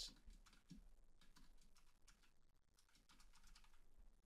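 Faint typing on a computer keyboard: scattered, irregular keystrokes.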